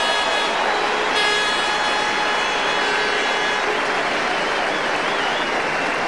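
Large stadium crowd applauding and cheering steadily, with long held horn toots sounding over the applause until about the middle.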